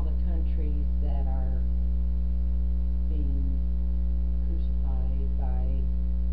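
Loud steady electrical mains hum, with faint voices speaking in short snatches a few times.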